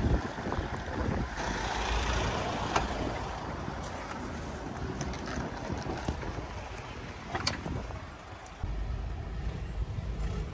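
Wind buffeting the microphone over outdoor traffic noise, with a few sharp clicks about three seconds in and again past seven seconds.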